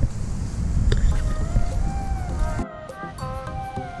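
Wind buffeting the microphone, with background music fading in under it; about two-thirds of the way through the wind noise cuts off abruptly and the music carries on with a steady beat.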